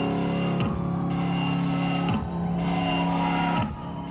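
Live rock band holding sustained electric-guitar chords at the close of a song. The chords ring steadily with a swoop in pitch about every second and a half, and drop in level near the end.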